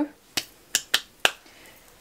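Four short, sharp clicks within about a second, from hands handling things.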